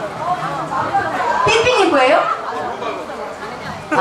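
Indistinct talk and chatter between people, with a brief low knock about a second and a half in.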